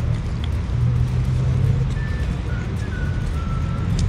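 Steady low outdoor rumble, like distant traffic or wind, with a faint high melody of a few held notes stepping down in pitch in the second half.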